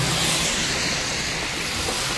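Steady rush of tyres on a rain-soaked road, with wind and rain, heard from a car driving in heavy rain. A low engine hum fades out about half a second in.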